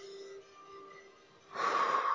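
Faint background music, then about one and a half seconds in a short, loud breath out, a half-second rush of air, as elbow and knee are drawn together in the bird-dog crunch: the exhale on the effort phase of the exercise.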